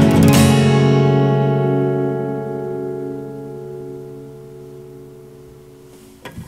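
Steel-string acoustic guitar: the song's final chord, strummed just after the start, rings out and fades slowly over several seconds until the strings are damped at the very end.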